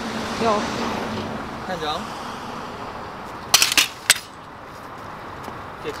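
A quick run of three or four sharp clicks and knocks about three and a half seconds in, from camera gear being handled on its tripod, over a steady hum of street traffic.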